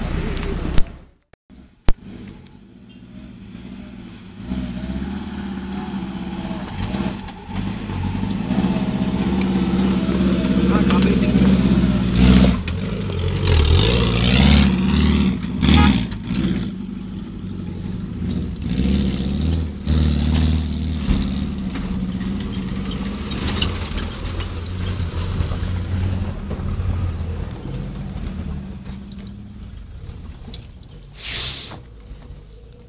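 Suzuki off-road jeep's engine pulling under load on a dusty dirt track, the engine note swelling from a few seconds in to its loudest in the middle, then running on steadier. A short dropout with two sharp clicks comes about a second in.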